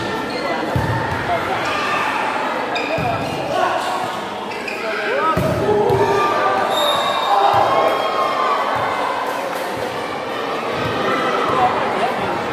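Volleyball rally in a gym: the ball is struck several times with sharp smacks, and there are short squeaks, over steady chatter and shouting from spectators.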